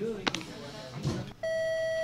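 A school public-address system sounds its attention tone through a ceiling loudspeaker: one steady electronic beep that starts near the end and is held, the signal that a morning announcement is about to be read.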